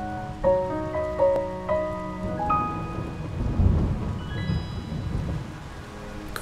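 Heavy rain falling, with a low rumble of thunder from about halfway through. In the first half it runs under a slow melody of held notes.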